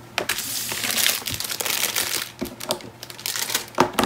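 Crinkling and rustling of a 12x12 scrapbook paper pad being handled and laid flat on a wooden table, dense for the first two seconds, then lighter handling with a sharp tap near the end.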